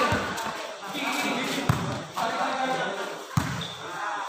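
A volleyball being hit three times in a rally, sharp smacks about a second and a half apart, with players and spectators shouting between the hits.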